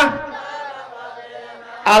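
A man's chanted devotional song through a public-address system: a sung line ends right at the start, its echo fades through a pause of nearly two seconds, and his voice comes back in loudly near the end.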